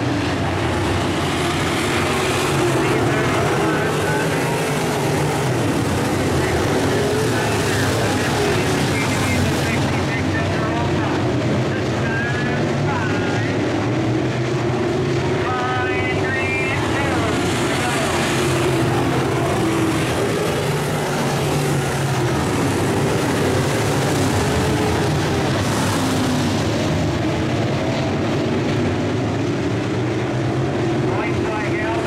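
IMCA Modified race cars' V8 engines running hard around a dirt oval, the pitch rising and falling as the cars go down the straights and through the turns. Voices are mixed in.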